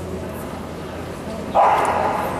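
A dog barks once, loud and sudden, about a second and a half in, over a low steady hum.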